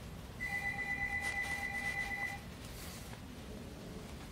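A steady electronic beep lasting about two seconds, starting a moment in: two fixed pitches, one high and one lower, sounding together, then it stops.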